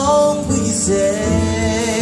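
Live soul-jazz band music: a male singer holds long, drawn-out sung notes over grand piano and upright bass.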